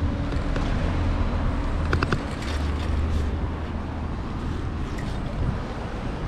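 Steady low rumble of street traffic and wind on the microphone of a camera carried on a moving bicycle, with a few light clicks about two seconds in.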